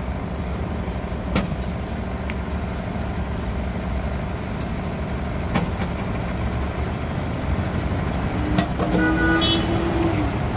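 City street traffic running steadily past, with a few sharp clicks, and near the end a held pitched vehicle tone like a car horn that lasts about a second and a half.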